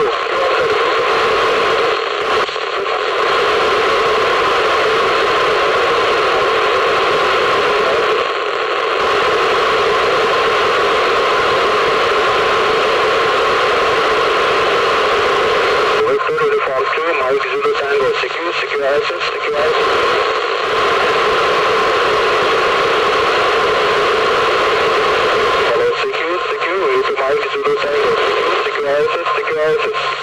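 Steady hiss of an FM radio receiver with its squelch open, from an Icom IC-2730A tuned to a Space Station pass. Weak, noisy voice transmissions break through the hiss about halfway in and again near the end.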